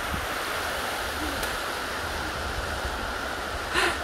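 River water rushing over a rocky, stony bed: a steady, even noise.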